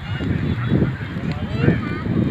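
A huge flock of rock pigeons flying up and circling, a dense rush of wingbeats with short bird calls over it.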